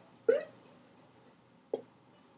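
Two short, sharp vocal sounds, about a second and a half apart, each a quick rise and fall in pitch.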